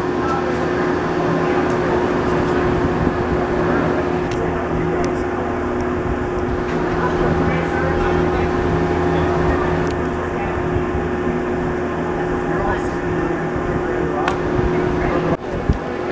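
Steady mechanical hum of a gondola terminal's drive machinery running continuously, a constant drone with a few fixed tones that does not change through the shot.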